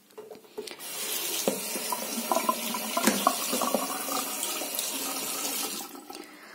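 Water running steadily from a tap, starting about a second in and stopping just before the end.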